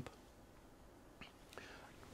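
Near silence: room tone, with a faint short sound about a second and a half in.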